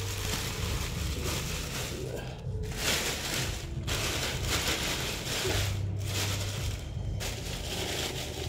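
Clear plastic bag crinkling as it is pulled over and wrapped around a potted bonsai tree, with a few short pauses in the handling.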